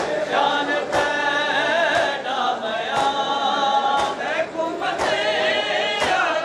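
Men chanting a mourning noha together, with a sharp stroke of hands striking chests (matam) in unison about once a second.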